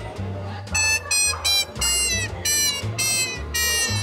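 Jazz music playing: a high, bright lead instrument in short phrased notes, about two a second, over a steady low bass line.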